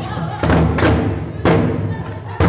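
Drumming on large skin-headed drums struck with wooden sticks: three heavy, uneven strikes over a steady low backing.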